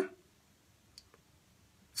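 A pause between a man's spoken sentences: the room is quiet apart from one faint click about a second in, with a fainter tick just after it.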